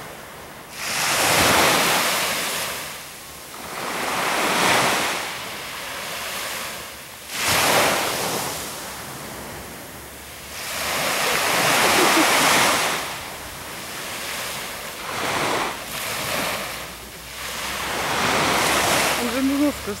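Surf washing onto a sandy beach: about six swells of rushing noise, each building and fading over a second or two, every three to four seconds.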